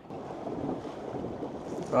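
Steady rush of wind on the microphone mixed with water moving along the hull of a small boat under way.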